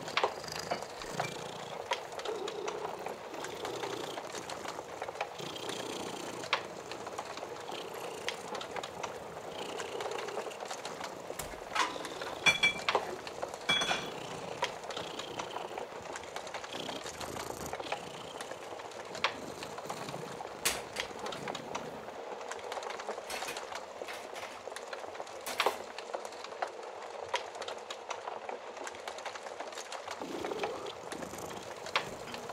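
Wood fire crackling, with a steady bed of crackle and scattered sharp pops, the densest cluster about twelve to fourteen seconds in, over a cat purring.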